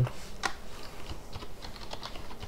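Typing on a computer keyboard: a quick, irregular run of keystroke clicks as a word is entered.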